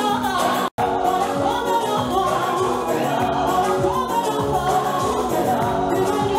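Gospel song sung by a choir with a male lead vocalist, over instrumental backing with a steady beat. The sound drops out completely for a split second just under a second in.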